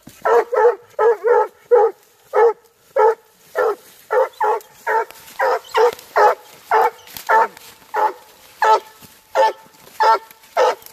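Hunting hound barking steadily at a downed raccoon, short loud barks about two a second.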